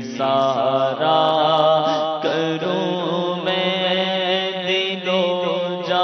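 A man singing an unaccompanied Urdu naat into a microphone, drawing out long ornamented notes over a steady low drone.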